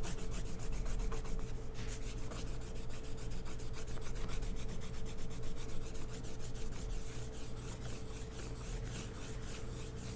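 Eraser rubbing over pencil lines on sketchbook paper in rapid back-and-forth strokes, erasing parts of a rose sketch.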